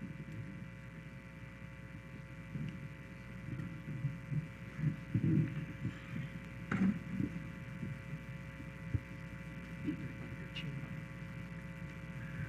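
Steady electrical hum of the sound system, under faint, muffled voices from a waiting audience and a couple of soft knocks.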